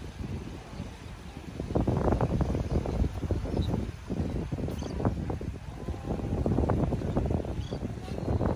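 Wind buffeting the microphone in uneven gusts, a low rumble that grows louder about two seconds in and dips briefly in the middle.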